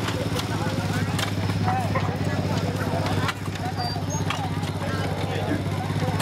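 An engine running steadily, a low even hum that dips slightly a little past halfway, with people talking over it.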